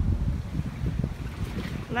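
Wind blowing on the microphone: an uneven low noise that rises and falls in gusts.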